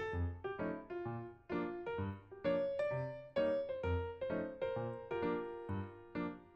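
Light background music on a piano-like keyboard, a steady beat of short notes, about two or three a second, over a bouncing bass line.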